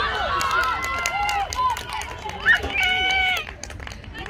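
Several high-pitched voices shouting at length over one another, loudest about two and a half seconds in, then dying away shortly before the end.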